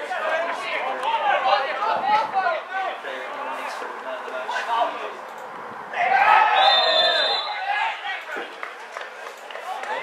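Footballers' voices shouting and calling across the pitch, rising to a loud burst of shouts a little past halfway, with a short, shrill referee's whistle blast in the middle of it.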